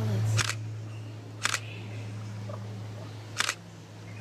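Camera shutter clicks: three quick double snaps about one to two seconds apart, over a steady low hum.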